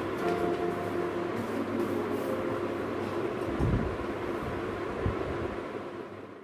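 Textbook pages being turned over a steady background hiss, with paper rustles in the first couple of seconds and two dull low thumps, one about three and a half seconds in and one near five seconds.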